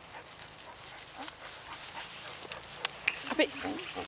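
A dog gives a short, rising whine near the end, over rustling in dry grass and a couple of sharp clicks.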